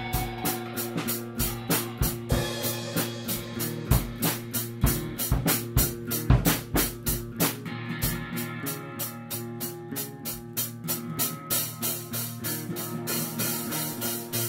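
Loose improvised rock jam: a drum kit playing a busy, steady beat of about four to five hits a second over sustained bass and electric guitar notes.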